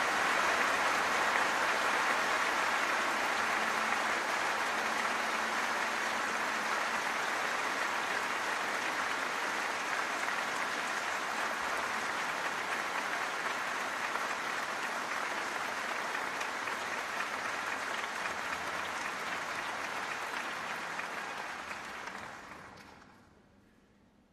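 Audience applauding: dense, steady clapping that slowly thins and dies away about 22 seconds in.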